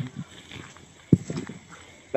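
A pause in a recorded phone call: faint line noise, with one sharp knock about a second in and a few softer knocks after it.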